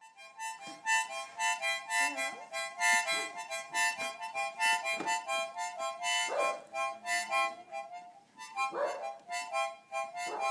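A small toy harmonica blown by a young child in short choppy puffs, several reeds sounding together as rough chords that cut in and out about three times a second, with a brief break near the end.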